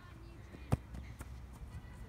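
A football kicked once, a single sharp thud about three-quarters of a second in, followed by a fainter tap about half a second later, over a low steady rumble.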